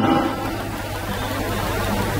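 Steady low hum of background noise, with the echo of a man's voice dying away at the very start.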